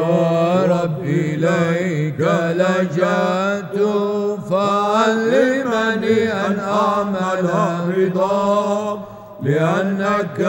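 Male chanters singing Byzantine chant: an ornamented, winding melody over a steady held low drone note (the ison), with a brief break just before the end.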